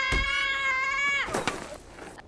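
Wooden door's hinges creaking open in one long, steady squeal, with a thump just after the start; the creak dies away about a second and a half in.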